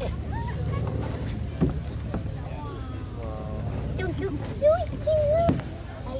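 Indistinct voices of several people talking over a steady low rumble, with a couple of sharp knocks. A louder, wavering high voice comes near the end.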